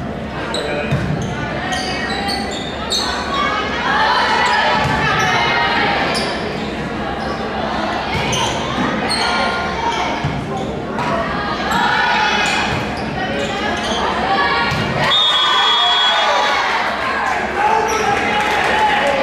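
Volleyball rally in a large gym: the ball struck again and again with sharp smacks, players and spectators shouting in the hall. A short referee's whistle about fifteen seconds in ends the point.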